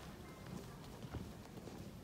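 Footsteps of a small squad marching in step across a carpeted floor, a run of short, soft steps.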